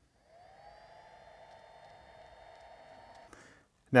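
Electric hot knife held against the frayed end of a nylon zipper tape to melt and seal the raveling. It gives a faint, steady high whine that rises briefly as it starts and cuts off a little past three seconds in.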